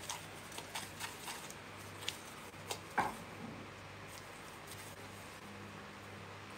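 Faint clicks and taps of a spatula working a thick butter, sugar and crushed-Oreo mixture in a glass measuring jug, over a low steady hum. One sharper short sound comes about three seconds in.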